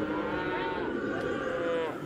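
A calf bawling in one long, drawn-out call that drops in pitch just before it stops, typical of a calf held down on the ground for working.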